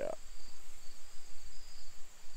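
Insect chorus: a steady high-pitched trill with a second, pulsing trill a little lower, the kind made by crickets and katydids.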